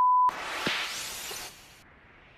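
A short, loud, steady censor bleep covering a shouted word, followed by a whoosh of noise that fades out over about a second and a half.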